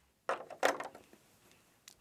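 A whiteboard marker set down with two short knocks about a third of a second apart, within the first second.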